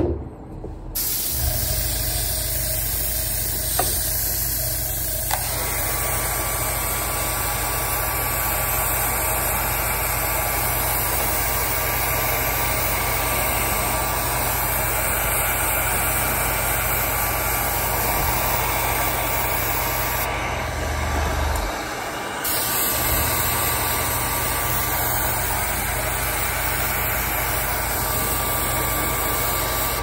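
Handheld electric heat gun blowing steadily, drying freshly airbrushed matte finisher on the leather; it starts about a second in, cuts out briefly a little past the middle, and comes back on.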